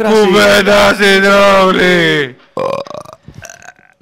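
A long, drawn-out burp-like vocal sound held at one low pitch for about two seconds, dropping as it ends; softer scattered noises and a short spoken word follow.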